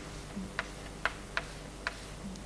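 Chalk writing on a blackboard: a handful of short, sharp clicks at irregular intervals as the chalk strikes the board.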